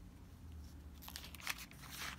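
Thin Bible-paper pages being turned by hand: a faint paper rustle with a few soft crinkles, a little louder near the end.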